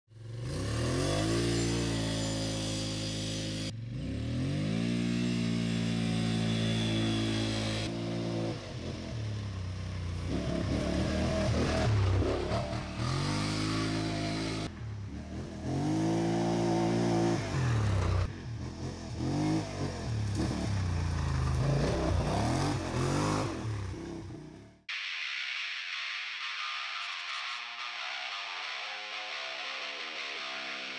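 Polaris Sportsman XP 1000 ATV's parallel-twin engine running through an HMF Titan QS stainless aftermarket exhaust, revving and accelerating in a run of short segments, its pitch rising and falling with the throttle. Near the end the engine sound stops abruptly and guitar music takes over.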